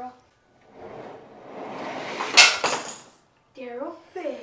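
Rustling and clattering of tools being handled, building to a sharp clank about two and a half seconds in.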